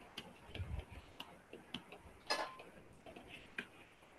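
Computer keyboard keys clicking faintly and irregularly as a search query is typed, with one louder key press a little past halfway.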